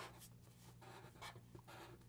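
Faint scratching of felt-tip Sharpie markers drawing short strokes on paper.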